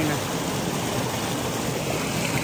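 Fast water rushing steadily along a narrow stone-lined channel fed by a spring, tumbling and splashing over rocks.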